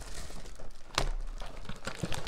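Cardboard trading-card blaster box being handled and opened by hand, with plastic wrap crinkling and light ticks, and one sharp click about a second in.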